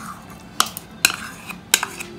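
A metal spoon scraping thick cream out of a small ceramic bowl and tapping against its rim, with a few sharp clinks about half a second apart.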